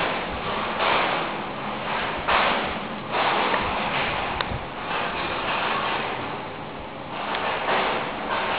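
Kroll KK30 combination boiler running: a steady rushing noise that swells and fades every second or so, dipping a little late on.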